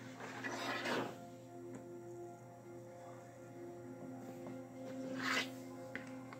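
Soft ambient background music of held, steady tones. Two brief rustles of handling noise break over it, about half a second in and again near the end, as LEGO pieces are handled.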